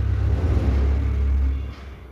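Hot oil sizzling as rava (semolina) gulab jamun balls deep-fry in a kadai, over a steady low rumble that drops away shortly before the end.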